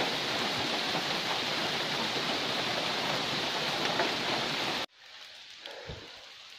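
Steady rain falling in a misty rainforest, an even hiss. It cuts off abruptly near the end, replaced by a much quieter background.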